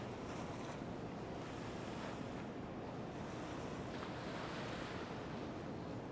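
Steady wash of sea waves and wind, with wind rumbling on the microphone.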